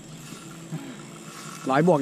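Spinning reel ticking faintly while a heavy catfish is fought on a bent rod. A man's voice starts near the end.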